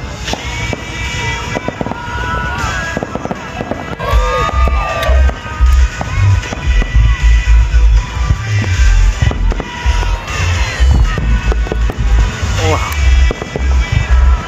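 Fireworks going off: a steady run of cracks and bangs with whistles gliding up and down, and heavy low thumps from about four seconds in.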